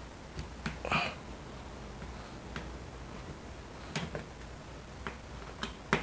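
A few sharp clicks and light taps of a T25 Torx screwdriver and a screw against the fuel-door housing as the screw is set and driven in. Three clicks come close together about half a second to a second in, one near four seconds, and a couple more near the end.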